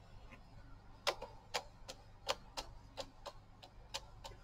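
A series of about ten light, sharp clicks at an uneven pace, roughly three a second, beginning about a second in.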